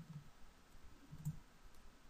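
A few faint clicks from a computer's keyboard and mouse as a line of R code is run in RStudio.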